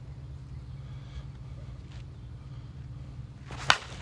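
Axe Inferno senior slowpitch softball bat striking a pitched softball: one sharp crack near the end. The bat is new and not yet broken in.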